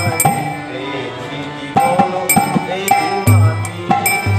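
Harmonium sounding sustained reed notes, accompanied by percussion strokes at a regular beat, with a man singing a Bengali devotional bhajan over it; deeper drum thuds come back in near the end.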